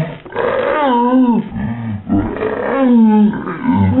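A man's voice making loud, drawn-out growling, roar-like cries, about four wavering howls in a row that swoop up and down in pitch.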